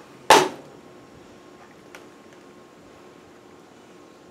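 A single sharp clack about a third of a second in as an empty plastic body cream bottle is put down, followed by quiet room tone with a faint steady hum.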